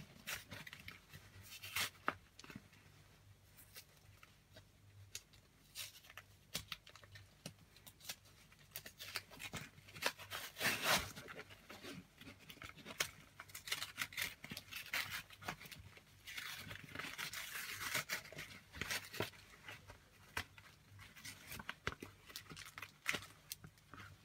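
Trading-card triple-pack packaging being torn open by hand: scattered tearing, crinkling and scraping, with the louder bursts about two seconds in, around eleven seconds, and again around seventeen to nineteen seconds.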